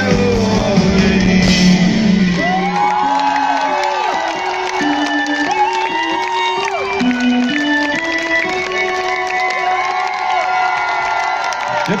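Live rock band finishing a song on a held final chord that dies away about two and a half seconds in, then an audience cheering and whooping while a few held instrument notes still sound.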